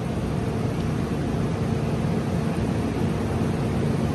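Steady background machine hum with a faint low tone and an even hiss; no distinct tool or impact sounds.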